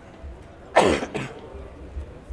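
A man coughing: one sharp, loud cough about three-quarters of a second in, followed by a smaller cough just after.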